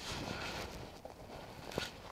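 Faint rustling and shuffling as a man leans in through a car's open driver door and back out, with one light click near the end.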